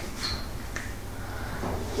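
Faint sharp clicks, one about a quarter second in and a weaker one soon after, over quiet room noise.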